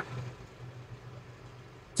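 A short pause in speech: only a faint, steady background hiss with a low hum underneath.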